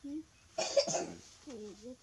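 A single loud cough-like burst about half a second in, with soft voice sounds before and after it.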